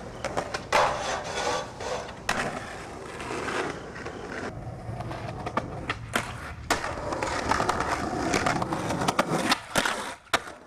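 Skateboard wheels rolling on pavement, broken by repeated sharp, irregular clacks and slaps of the board hitting the ground.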